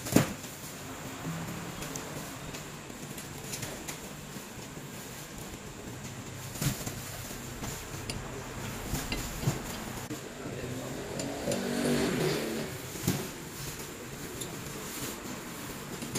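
Plastic-wrapped fabric rolls being carried and loaded onto a lorry's cargo bed: scattered knocks and thuds over a low, steady background, with faint voices about twelve seconds in.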